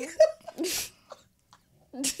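A person makes a brief voiced sound that breaks into a sharp, short hiss about two thirds of a second in.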